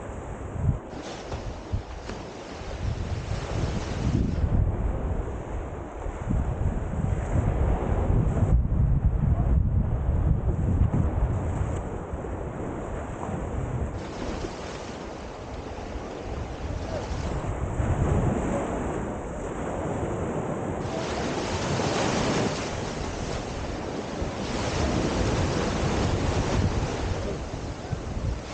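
Sea surf breaking and washing up a beach of black volcanic sand and gravel, swelling in surges several times through the second half. Wind buffets the microphone with a low rumble, heaviest in the first half.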